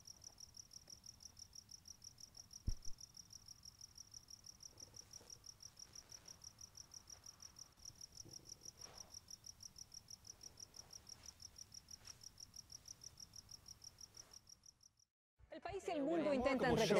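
A cricket chirping in a steady, fast, high-pitched pulse, faint throughout, with a short knock about three seconds in. The chirping cuts off suddenly shortly before the end.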